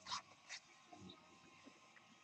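Near silence, broken by two faint short sounds in the first half-second.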